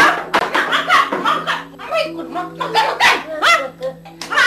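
Women's voices screaming and crying out in a struggle, in short, shrill, broken cries, over a low held chord of background music.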